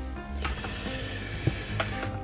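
Background music, with a few light clicks and a soft rustle as the plastic blender jug is handled.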